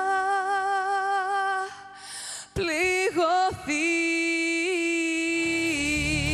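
A woman singing almost unaccompanied: a long held note with vibrato, a short breath about two seconds in, a few quick sliding notes, then a second long held note. A band with bass and drums comes in near the end.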